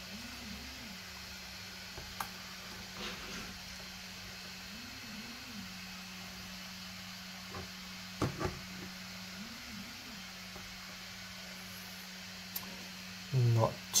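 Faint handling sounds of a glass-fronted touchscreen display panel being lifted and set down on a table: a few light taps, with a pair of louder knocks about eight seconds in, over a steady low hum.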